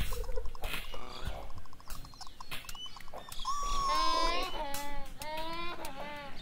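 Cartoon voice sound effect: a voice makes two drawn-out, wavering non-speech sounds, the first about three and a half seconds in and a shorter one about five seconds in, with a few faint clicks before them.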